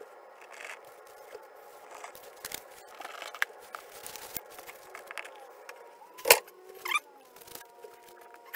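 Handling sounds of gluing and fitting a wooden beam: small clicks and rustles from a wood glue bottle and the wooden strip, over a faint steady hum. A sharp knock about six seconds in and a second just before seven as the beam is set down on the shelf.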